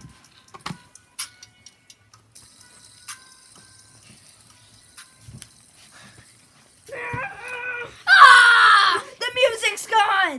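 Music playing faintly from a speaker, then loud high-pitched squealing from a young voice starting about seven seconds in, with falling swoops of pitch at the end.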